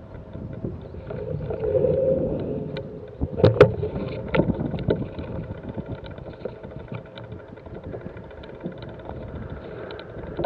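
Mountain bike rolling over a rough grassy track: tyre rumble and wind on the microphone, with knocks and rattles from the bike. A loud clatter comes about three and a half seconds in, and fine ticking runs through the second half.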